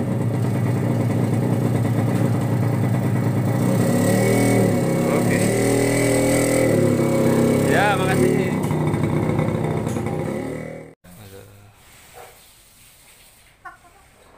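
Motorcycle engine running under the rider, its pitch rising and falling as the loaded cargo trike pulls away. The engine sound stops abruptly about eleven seconds in, leaving only faint sound.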